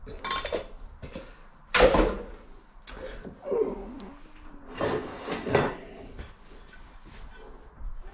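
Cutlery and kitchen containers being handled on a wooden chopping board: a series of short knocks and clinks, the loudest about two seconds in.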